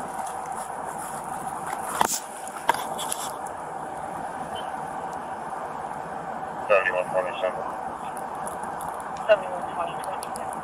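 Short bursts of a distant voice, about seven and nine seconds in, over a steady outdoor hiss, with a few sharp clicks about two to three seconds in.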